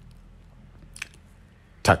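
A pause in a man's speech, filled by a low steady hum, with one short mouth click about halfway; his voice starts again near the end.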